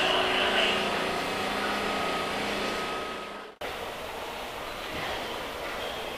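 Kintetsu electric train running alongside the platform, its wheel and motor noise carrying a few steady whining tones and slowly fading. About three and a half seconds in it cuts off abruptly to quieter station ambience.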